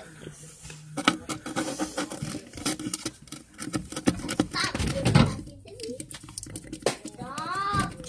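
A small stick stirring and tapping in a plastic bottle cap full of glue and toothpaste, making a quick irregular run of light clicks and scrapes.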